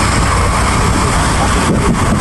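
Sound at a house fire: a loud, steady rushing noise over a low engine rumble, from fire engines running and a hose jet playing water on the burning house.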